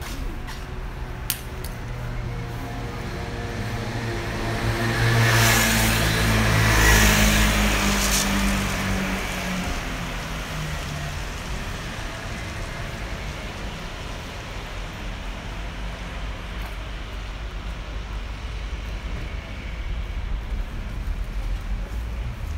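A car passing close by on a city street: engine hum and tyre noise rise to a peak about six or seven seconds in, then fade into steady background traffic.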